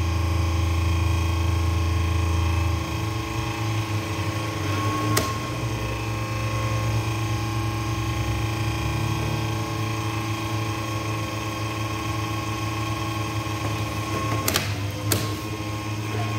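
Steady hum with several fixed tones from a running computer ATX power supply and its cooling fan. A few sharp clicks cut through it, one about five seconds in and two close together near the end.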